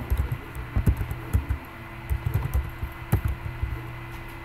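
Computer keyboard keys being typed in short, irregular strokes over a steady low hum.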